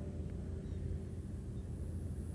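Steady low background rumble of outdoor ambience, with no distinct events.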